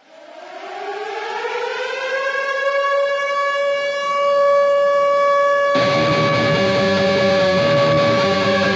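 Air-raid siren sample winding up from a low pitch to a steady wail, opening a death/thrash metal track. About three quarters of the way in, a low band layer comes in beneath the held siren tone.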